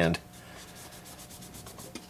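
A cloth wiping and rubbing over the silver plinth of a Technics turntable near the tonearm: a quiet, soft scrubbing.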